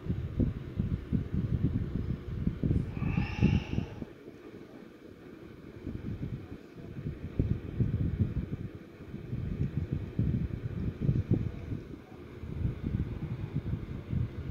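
Uneven low rumbling and rubbing on a phone microphone as the phone is handled and moved, with a short higher-pitched sound about three seconds in.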